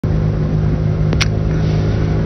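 Steady engine drone under a haze of wind and road noise, with a short click a little after a second in.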